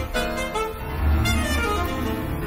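Alto saxophone and piano playing a contemporary classical duo, the notes shifting every fraction of a second over deep, heavy low notes.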